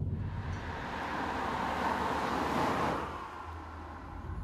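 A car driving past at about 50 km/h: its tyre and engine noise swells to a peak two to three seconds in, then fades away. At the roadside it measures close to 79 decibels.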